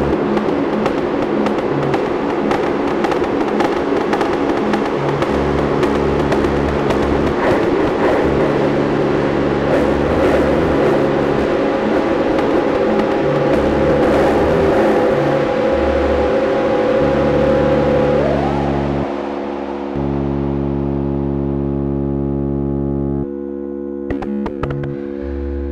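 Modular synthesizer music: a dense, noisy texture full of clicks over droning pitched tones, with a low bass tone that pulses on and off. About three quarters of the way in the noise and clicks fade away, leaving the steady drone and bass.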